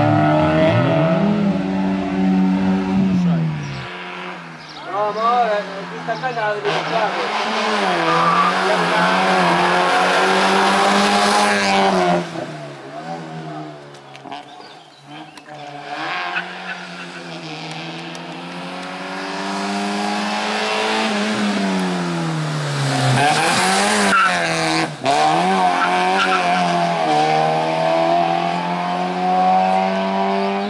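Racing hatchback's engine revving hard and dropping again and again as it is driven through a slalom course, with tyres squealing in the turns. The engine fades quieter about midway and then builds up again.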